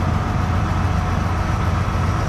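Concrete pump truck's diesel engine running steadily at idle, a constant low rumble with a faint steady hum above it.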